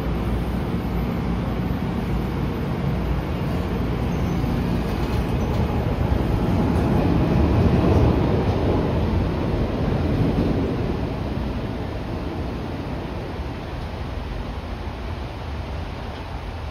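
SEPTA Market-Frankford Line M-4 subway train pulling out of an underground station: the rumble of motors and wheels on the rails builds to a peak about halfway through, then fades as the train goes off into the tunnel.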